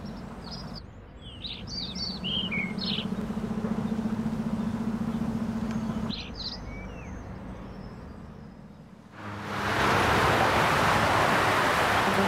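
Outdoor ambience: small birds chirping over a steady low hum. About nine seconds in this gives way to the even rush of heavy highway traffic.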